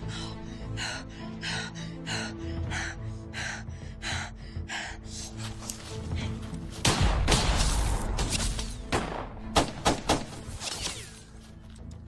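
Tense action-film score with held low notes and a quick repeated pulse, broken about seven seconds in by a loud crash lasting about a second, then a few sharp cracks close together.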